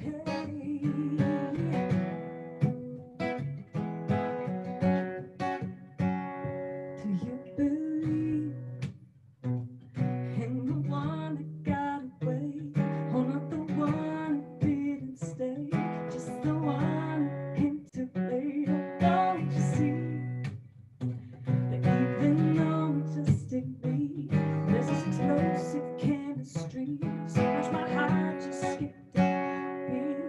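A woman singing a song with an acoustic guitar strummed alongside her, a duo performance heard over a Zoom video call.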